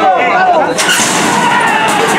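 Metal starting-gate doors of a horse-race starting gate banging open about three-quarters of a second in, a sudden burst of noise as the horses break, over a crowd of spectators shouting.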